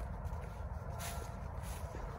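Footsteps on a path of dry fallen leaves, with faint scattered crunches over a steady low rumble.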